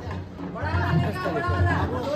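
Several people chattering at once over background music.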